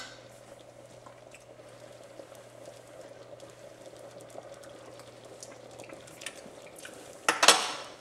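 A pot of red beans simmering on the stove with faint bubbling, and a spoon clinking against the pot, loudest in a short clatter near the end.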